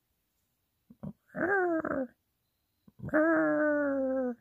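Two drawn-out wordless vocal calls with a slightly falling pitch, a short one and then a longer one about a second later.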